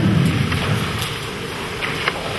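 Steady room noise picked up by a lectern microphone, with a few faint rustles and light clicks as sermon papers are handled at the pulpit.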